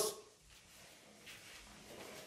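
Faint swishing of a segmented, foam-padded hula hoop as it spins around a child's waist, in an otherwise quiet room.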